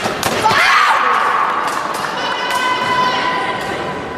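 Sabre blades clashing in a quick exchange, a couple of sharp metallic clicks, followed straight away by a loud shout from a fencer. About two seconds in comes the fencing scoring machine's steady electronic tone, which lasts about a second and a half.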